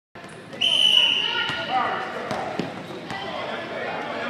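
Basketball game in a gym: a high, shrill steady tone sounds for about a second near the start, then a basketball bounces on the hardwood court amid players' and spectators' voices, echoing in the large hall.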